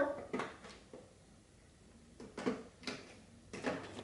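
A few soft, separate clicks and knocks of markers being picked up, handled and set down while drawing, with quiet between them.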